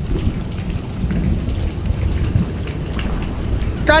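Rain-and-thunder storm sound effect: a steady low rumble under a hiss of rain, starting suddenly out of silence. A man's voice comes in right at the end.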